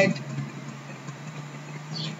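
A steady low hum with faint hiss under it, in a pause between spoken words; the tail of a word is heard at the very start.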